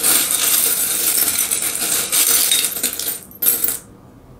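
Many small metal charms jingling and clinking together as they are rattled, dense and continuous, stopping a little after three seconds in with one short last rattle just before the end.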